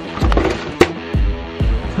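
Background music with a steady beat about twice a second, and a sharp knock a little under a second in.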